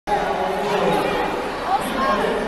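Crowd chatter: many voices talking at once, none standing out.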